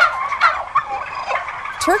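A flock of white domestic turkeys gobbling, several short calls overlapping one another.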